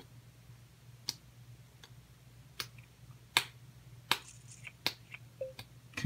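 A series of about seven short, sharp clicks, roughly one every three quarters of a second, over a faint low steady hum.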